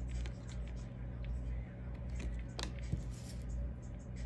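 Tarot cards being handled and laid down on a tabletop: a scattering of soft card clicks and slides over a steady low hum.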